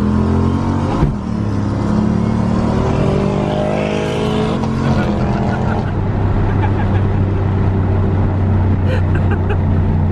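Turbocharged Mustang's engine heard from inside the cabin under light acceleration on the freeway. About a second in, a click and a brief drop in revs mark a shift into third. The revs then climb for a few seconds and level off to a steady cruise.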